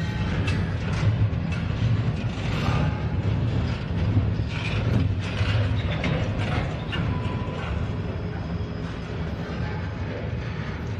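Double-stack container well cars of a freight train rolling past: a steady low rumble of steel wheels on rail, with scattered clicks and clanks from the cars.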